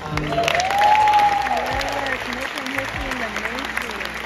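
Audience applauding and cheering in a hall, with one long whoop near the start.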